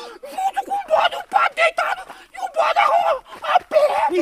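Men's voices talking excitedly over one another; only speech is heard.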